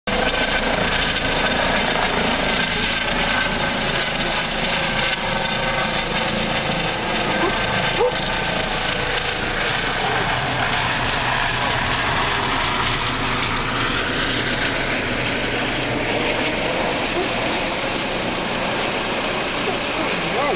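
Eurocopter EC135 medical helicopter flying low overhead, its rotor and turbine noise loud and steady throughout.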